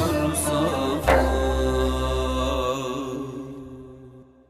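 Closing of a Turkish naat in makam Rast, sung by a male voice over a low drone. About a second in, an accented final note is struck and held, then fades away towards the end.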